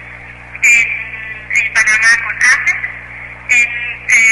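A person talking; the words are not made out.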